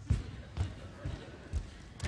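Bare feet stepping in unison on a stage floor, making low thuds about twice a second as three performers walk forward in step.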